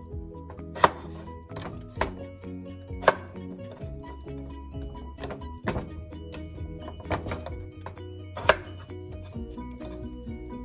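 Chef's knife cutting through raw potatoes and knocking on a wooden cutting board: about six sharp knocks spaced a second or two apart, trimming the potatoes' edges. Background music plays under the cutting.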